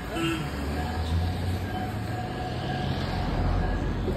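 Low, steady engine rumble of cars driving past close by on a road, growing a little louder near the end.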